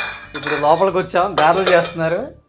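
Metal kitchenware clinks with a short ringing tone at the start, like steel utensils or a pot knocked on the counter, followed by a voice talking.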